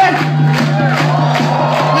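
Concert crowd yelling and whooping on cue, over a steady low hum from the stage.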